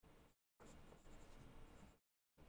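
Faint scratching of a pen on paper during handwriting, cut off abruptly for a moment shortly after the start.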